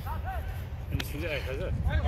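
Football players calling out to each other across the pitch in short shouts, over a steady low rumble, with one sharp knock about halfway through.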